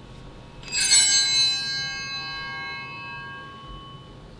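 Altar bells rung once, starting about a second in: a bright cluster of high ringing tones that fades out over about three seconds. They mark the consecration of the chalice at Mass.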